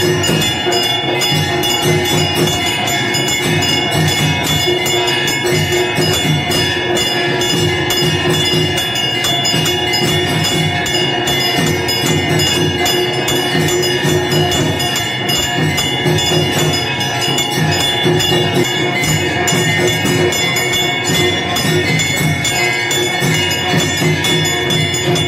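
Hindu temple bells ringing continuously over a steady rhythmic percussion beat, the ritual music of a temple pooja.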